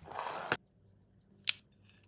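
Black 3D-printed plastic lens parts handled on a wooden tabletop: a brief scrape of plastic sliding on the wood ending in a knock, then one sharp plastic click about a second and a half in.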